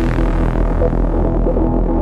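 Hard trance track with a deep, steady bass drone under repeating synth notes, without drum hits, while the treble fades out as if a filter is closing.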